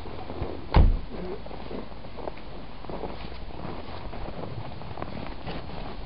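Footsteps in snow, faint and irregular, over a low steady rumble, with one loud thump about a second in.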